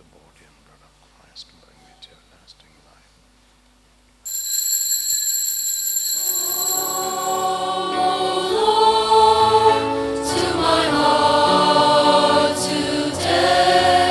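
Quiet with a few faint clicks, then about four seconds in a sustained instrumental chord sounds suddenly and a choir starts singing a hymn over the accompaniment. This is the communion hymn beginning as communion is given.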